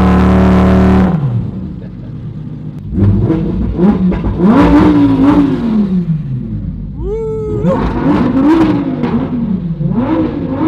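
Lamborghini Huracán's V10 engine revving: the revs climb and hold high for about a second, then fall away. From about three seconds in, the car accelerates hard through the gears, the pitch rising and dropping again with each upshift.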